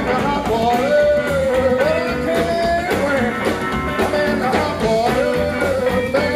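Live rockabilly band playing: acoustic and electric guitars, upright bass and drums, with a bending melodic line held on top.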